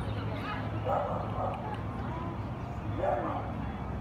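A dog making short, high vocal sounds in two brief bursts, about a second in and again about three seconds in, over a steady low hum.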